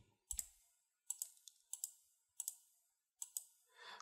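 Faint computer mouse clicks: about five in a row, one every 0.7 seconds or so, each a quick pair of ticks.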